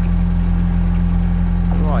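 Narrowboat engine running steadily under way, a constant low drone.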